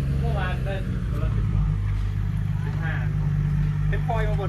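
An engine running steadily at idle, a low, even hum, with faint voices over it.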